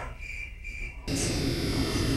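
Quiet soundtrack of a lambe-lambe box puppet show, with two faint high chirps. About a second in it gives way suddenly to a steady hum and hiss.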